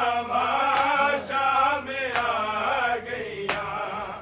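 Group of men chanting a Punjabi noha, a Shia lament, in unison behind a lead reciter, with a sharp slap of chest-beating (matam) every second or so.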